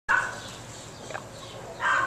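Two short animal calls, one right at the start and one near the end.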